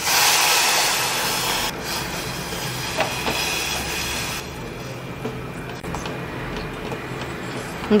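Water poured from a steel tumbler into a stainless steel pot: a steady rushing splash that starts abruptly and runs for about four seconds, with a single clink about three seconds in, then eases to a quieter steady noise.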